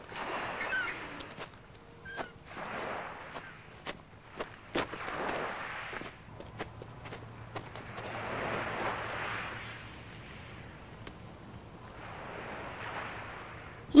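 Sea surf washing on the shore, rising and falling in slow swells about every three to four seconds, with scattered footsteps on a dirt path.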